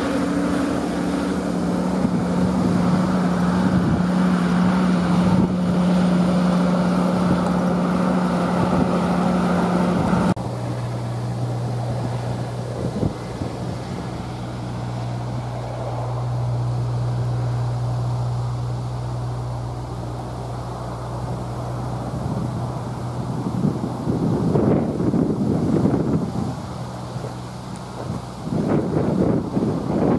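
Diesel engine of a wheeled road-construction machine running at a steady speed. About ten seconds in, the sound cuts to a lower, steady engine hum, and wind buffets the microphone near the end.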